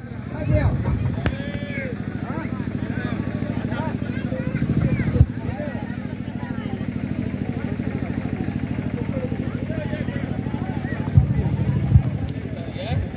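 An engine running steadily with a fast, even putter, under scattered shouts and calls from players and onlookers. A thump sounds about five seconds in, and another near the end.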